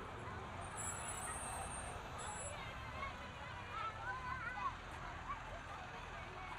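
Outdoor street ambience: a steady low rumble of road traffic passing, with the voices of passers-by talking and a few faint high squeaks about a second in.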